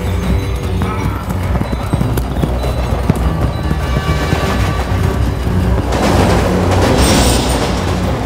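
Dramatic film score over the many hoofbeats of a running herd of camels, with a loud rushing swell about six seconds in that lasts over a second.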